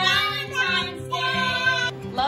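A young child's voice in two long, drawn-out, sing-song sounds over light background music.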